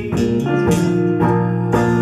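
Electric guitar strumming chords, the notes ringing on between strokes.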